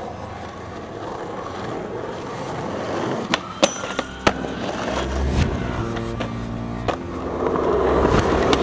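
Skateboard wheels rolling over rough, cracked asphalt, the rolling noise growing louder, with a few sharp clacks a little past the middle.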